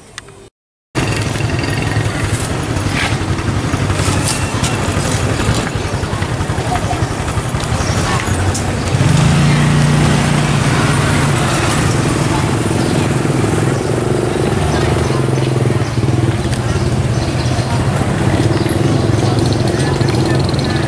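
Busy open-air market ambience: a motorcycle engine running nearby over background voices. The engine hum grows louder about nine seconds in. The sound starts after a short silent break about a second in.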